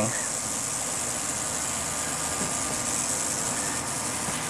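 Southwestern speckled rattlesnake rattling its tail: a steady, high, hissing buzz.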